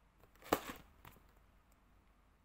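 Cardboard box handled in the hands and turned over: a short scrape about half a second in, then a faint tap a little later.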